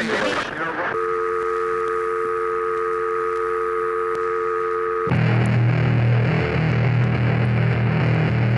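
A spoken sample fades out about a second in. It gives way to a steady electronic tone of a few held pitches, like a telephone line tone, lasting about four seconds. Then the hardcore band comes in loud with distorted guitar and heavy bass.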